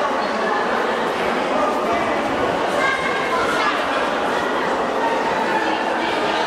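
Indistinct chatter of people's voices echoing in a large underground pedestrian underpass, a steady wash with no clear words.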